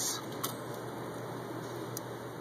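Steady hiss of a handheld gas torch flame burning, with one small click about half a second in.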